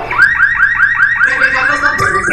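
Electronic yelp siren, a fast run of rising-and-falling whoops about six a second, starting just after a voice ends.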